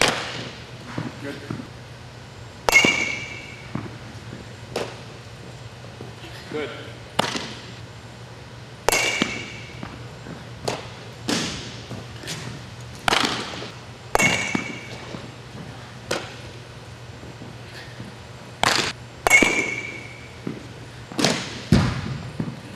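A string of sharp smacks of softballs being batted and caught in an echoing indoor hall, one every second or two, with the loudest near the start and near the end. Several hits carry a short metallic ping, typical of an aluminium fungo bat.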